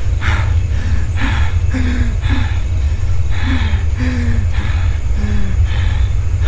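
Soft, even footsteps about twice a second, walking along a road, over a steady low drone of background music with a few short low notes.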